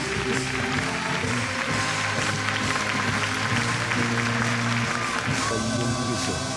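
Audience applauding in a hall over music with held notes; the clapping dies away near the end.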